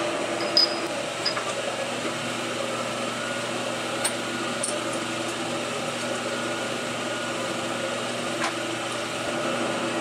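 Three-phase converter humming steadily, a low, even drone with several held tones. A few light metal clicks from a boring bar being fitted into a boring head are heard over it, about half a second in, around four to five seconds in, and again near the end.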